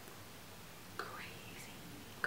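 A pause in talk: faint room tone, with a brief soft breathy vocal sound from the speaker about a second in.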